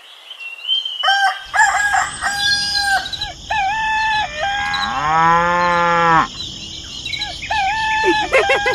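Chickens and a rooster calling repeatedly, with one long cow moo about five seconds in, then more chicken calls near the end.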